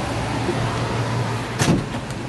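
Steady low hum and hiss inside a tour bus, with one short knock about three-quarters of the way through.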